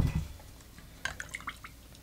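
A glass liquor bottle set down on the bar with a single thump. About a second later, a jigger of rum is poured over ice in a glass, with a few light splashes and drips.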